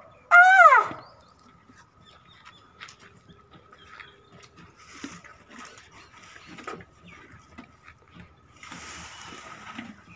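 An Asian elephant gives a short, high squeak that rises and falls, about half a second long, within the first second: a greeting call made on her keeper's cue. After it come only faint scattered clicks and rustling over a thin steady high tone, with a brief rustle near the end.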